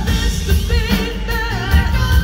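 Live rock band playing a song on stage, with keyboards, electric guitar, bass and drums under a sung lead vocal.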